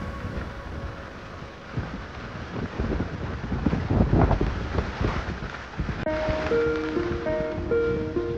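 Wind buffeting the microphone over a steady wash of water noise at a brimming, flooded pond. About six seconds in, light plucked-string background music starts.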